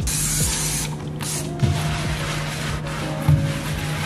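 Background music, over which a spray bottle of cleaner hisses in two short sprays: one at the very start and one about a second and a half in.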